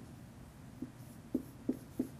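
Marker pen writing on a whiteboard: short separate taps and strokes of the tip on the board, a few in quick succession in the second half.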